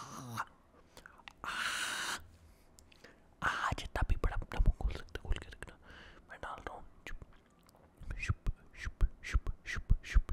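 Close-miked ASMR mouth sounds: quick wet clicks and smacks in runs, after a short breathy hiss a second and a half in.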